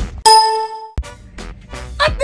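A bright bell-like ding sound effect struck once about a quarter second in, ringing steadily for most of a second and then cutting off abruptly, followed by fainter background music.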